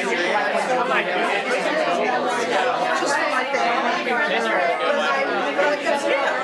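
Dinner-table chatter: many people talking at once in overlapping conversations, with no single voice standing out.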